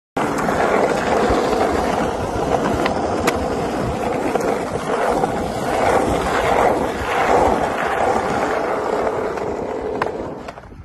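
Skateboard wheels rolling over rough asphalt: a loud, continuous gritty rumble, with two sharp clicks about three seconds in.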